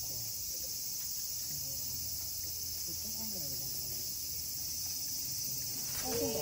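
Steady, high-pitched drone of summer cicadas, unchanging throughout, with faint human voices underneath.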